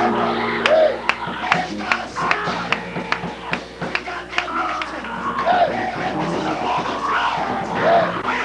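Live gospel praise-break music: held keyboard chords under quick drum hits, about three a second, loud and rough on the recording.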